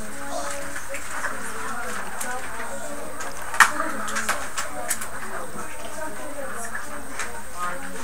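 Faint, low murmur of children's voices in a classroom, with a sharp click about three and a half seconds in and a few softer ticks.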